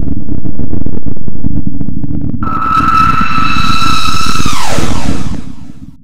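Loud, heavy low rumble. About two and a half seconds in, a high whine joins it, holds steady, then slides down in pitch and fades out near the end.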